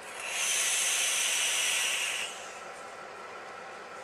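A draw on a dual-18650 mechanical box mod fired into a 0.12-ohm build: the atomizer coil sizzles and air hisses through it steadily for about two seconds, then stops.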